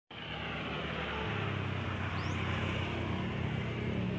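A motor vehicle engine running steadily and slowly growing louder, over road and wind noise.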